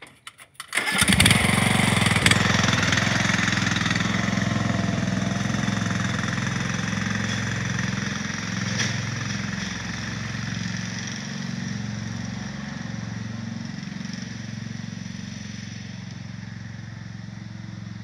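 Ariens riding lawn mower's 17.5 hp engine cranked and starting about a second in, then running steadily and slowly fading as the mower pulls away with its trailer.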